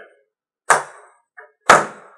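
Two sharp, loud knocks about a second apart, each dying away quickly.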